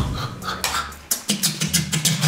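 Human beatboxing: deep kick-drum thuds and sharp snare and hi-hat clicks made with the mouth, in a rhythm, with some voiced notes between them.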